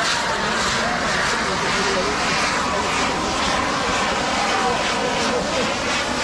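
Firework fountains (bana) spewing showers of sparks with a steady, loud rushing hiss.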